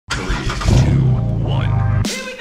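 A 2009 Jeep Wrangler JK's 3.8-litre V6 starting up and settling into a steady run, with music over it.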